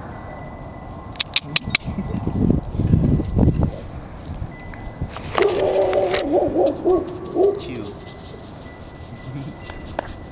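A four-week-old puppy gives a wavering, whining cry for about two seconds past the middle. It is preceded by a few sharp clicks and a low rumble of handling noise.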